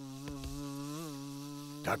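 Cartoon wasp buzzing: a steady, low, even buzz whose pitch lifts briefly about halfway through.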